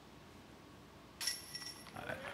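Putter disc hitting the hanging chains of a disc golf basket a little over a second in: a sudden metallic jingle that rings on briefly, the sound of a made putt.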